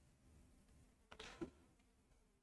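Near silence: faint room tone, with one brief faint noise a little over a second in.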